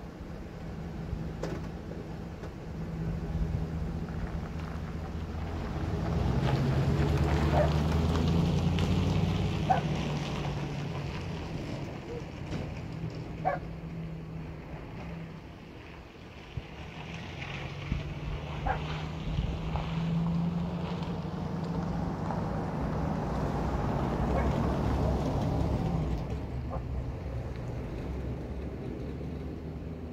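Motor vehicle engines running close by: a pickup truck's engine pulls away, swelling to its loudest about a quarter of the way in and dying down around the middle. A second engine then swells and fades in the second half.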